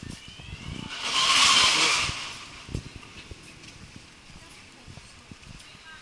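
Street traffic: a vehicle passes with a brief rushing hiss that swells and fades about a second in. Quieter street background follows, with a few soft knocks.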